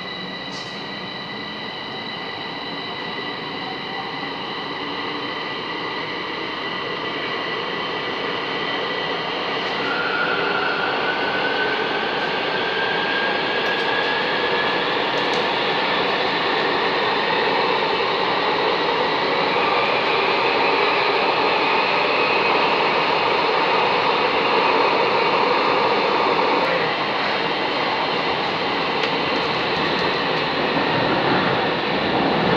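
A Bucharest M5 metro train pulling out of a station and speeding up into the tunnel: running noise that grows louder over the first ten seconds or so, with a steady high whine at first, then a motor whine that climbs in pitch as the train gathers speed.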